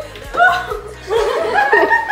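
Young women laughing in surprised delight, over background music.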